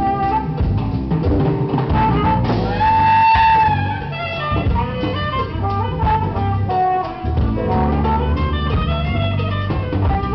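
Live band playing: a saxophone carries the melody, holding one long note about a third of the way in, over drum kit, congas, electric guitar and keyboard.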